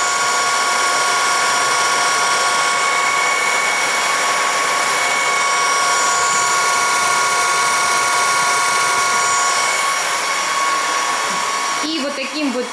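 Redkey W12 cordless wet-dry floor vacuum running its self-cleaning cycle on the charging dock: the brush roller spins and the suction motor draws water through it, a steady whine over a rushing hiss.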